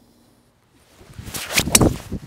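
Golf driver swung at about 102 mph clubhead speed: the swish of the downswing builds from about halfway through and ends in a sharp crack as the clubface strikes the ball, struck near the centre of the face.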